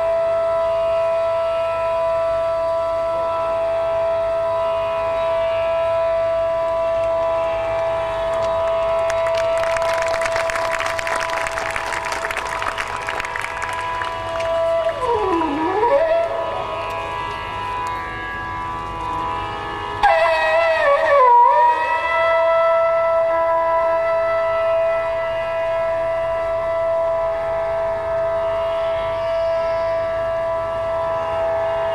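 Bansuri (Indian bamboo flute) playing Raag Yaman Kalyan in long held notes over a tanpura drone. Near the middle the flute's pitch dips and glides back up, and about two-thirds in a loud note slides down and settles into the steady held tone.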